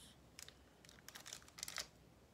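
A faint plastic snack wrapper crinkling as it is turned over in the hands: a few light, crackly rustles, bunched together in the second half.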